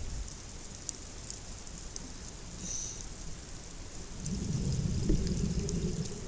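Underwater ambience picked up by a dive camera: a low, even rumble of moving water with sparse faint clicks, swelling into a louder low rumble over the last two seconds.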